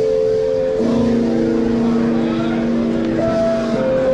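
Live funk band playing: sustained chords held and changing to new ones about a second in and again near the end, over a steady drum-kit groove.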